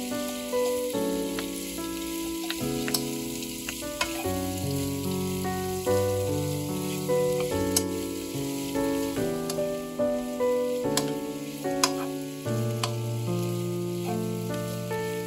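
Napa cabbage, carrot and mushrooms frying in butter in a nonstick pan: a steady sizzle with scattered clicks of a wooden spatula stirring. Instrumental background music with notes changing about twice a second plays under it.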